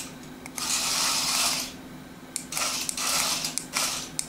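Adventure Force remote-control crawling cobra toy running across a laminate floor: its small motorised mechanism sounds in two bursts with some clicking, the first starting about half a second in and lasting about a second, the second starting about halfway through and running on.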